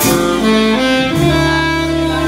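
Live small-group jazz: an alto saxophone plays a quick run of short notes, then holds one long note from a little past halfway. Upright bass, vibraphone and drums accompany it.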